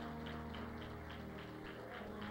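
Soft background music: sustained keyboard chords that change slowly, with a light, steady tick about four to five times a second.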